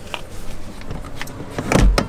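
Handling noise around a car seat: faint rustles and clicks, then a louder rustle with a low thump near the end.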